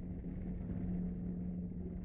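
UH-60 Black Hawk military helicopter flying past, a steady low rumble with a constant hum.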